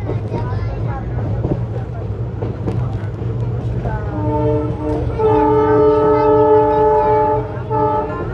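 Indian Railways ICF passenger coach running fast through a station, its wheels rumbling and clicking on the track; about halfway in the locomotive horn sounds a long blast with a brief break, then a short second toot near the end.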